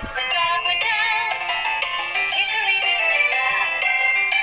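Nursery-rhyme song: a sung melody with wavering, vibrato notes over an instrumental backing.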